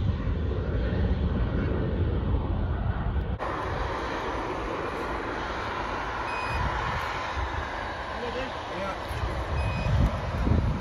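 Jet airliner engine noise with heavy wind rumble on the microphone. About three and a half seconds in the sound changes abruptly to a Boeing 737-800's CFM56 turbofans on its landing roll, a steady rushing noise.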